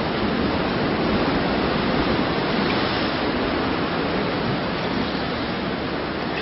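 Steady rushing of ocean surf below the cliffs, a constant wash of noise with no distinct waves breaking.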